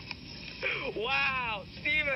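A boy's high-pitched wailing in a tantrum: two drawn-out, rising-and-falling wails, the second starting near the end.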